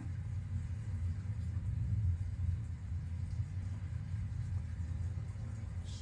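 Steady low background rumble, with nothing else standing out.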